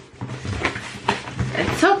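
A couple of brief knocks and rustles from a cardboard shipping carton being handled and opened, then a woman starts to speak near the end.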